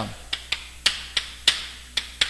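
Chalk tapping against a blackboard while writing by hand: a series of short, sharp taps, about three a second.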